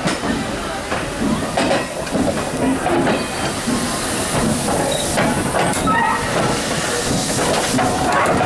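Steam hissing from GNR V Class 4-4-0 No.85 Merlin standing at the platform, the hiss growing stronger in the second half, with people talking nearby.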